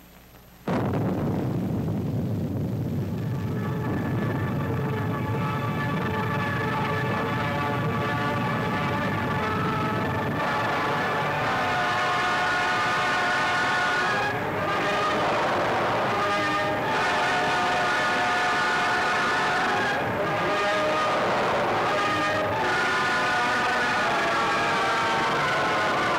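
A sudden loud rumble breaks in just under a second in: the deep, noisy sound of an atomic bomb's blast. From a few seconds in, dramatic orchestral film music rises over it and continues.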